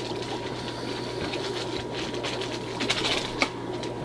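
A small plastic sample bag that was stapled shut, crinkled and torn open by hand: continuous rustling and crinkling with many small clicks, over a steady low hum.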